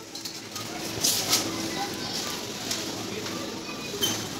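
Supermarket ambience while walking on a tiled floor: indistinct voices of other shoppers, footsteps and rustling, with a few short high tones.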